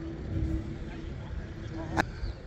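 Low, rumbling outdoor background noise with a faint steady hum.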